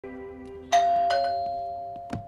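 Two-tone doorbell chime: a higher "ding" about two-thirds of a second in, then a lower "dong", both ringing on and slowly fading, over quiet background music.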